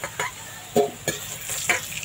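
Potato cubes sizzling in hot oil in a metal wok while a metal ladle scoops the fried pieces out, with several sharp clicks and scrapes of the ladle against the pan.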